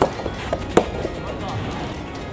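Background music over sharp smacks of a soft tennis ball in a rally, struck by a racket or bouncing on the court. There is one smack at the start and a louder one just under a second in.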